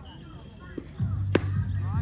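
A single sharp pop of a baseball smacking into a catcher's leather mitt, a little past a second in, as a pitch is caught. A low steady hum starts just before it.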